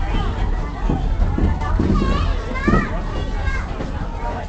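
Children's voices chattering and calling, with no clear words, over a steady low rumble.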